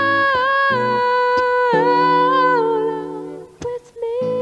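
A woman's voice holds one long wordless note that wavers and falls gently, over strummed acoustic guitar chords; the note fades out about three and a half seconds in, followed by a couple of light strums.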